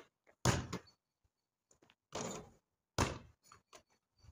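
A basketball thudding against hard surfaces: three loud hits spread over a few seconds, with a few fainter knocks between.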